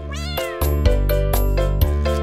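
A single cat meow just after the start, then background music with a steady beat, roughly two beats a second.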